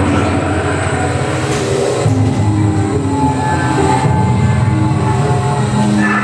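Dark-ride vehicle running along its track with a steady low rumble, and short held tones sounding over it.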